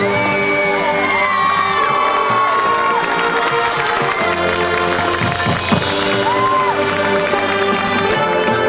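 High school marching band playing sustained, held chords, with the audience cheering and whooping over the music.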